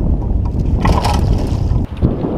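Wind buffeting the microphone on an open boat over choppy water: a steady low rumble, with a brief hissing burst about a second in. The sound dips for a moment near the end.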